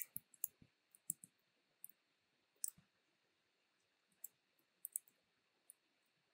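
Faint, sharp computer mouse and keyboard clicks, irregular and in small clusters, with near silence between them.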